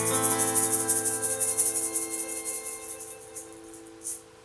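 Closing chord of an acoustic folk song: an acoustic guitar and a violin ring on held notes that slowly die away, while a hand shaker rattles quickly and fades out near the end.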